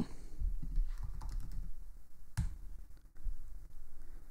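Computer keyboard typing: a run of soft, irregular key clicks, with one louder click a little past halfway.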